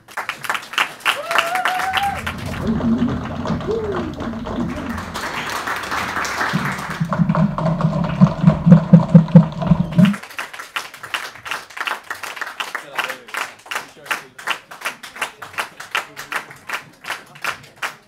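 Audience applause, with voices calling out in the first half and a run of loud claps close by around the middle; the clapping thins out toward the end.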